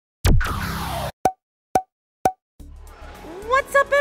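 Intro sound effect: a cartoon-like pop with a steeply falling pitch that rings for under a second, then three short, bright pops half a second apart. After a brief silence, the background din of an arcade comes in and a man's voice begins.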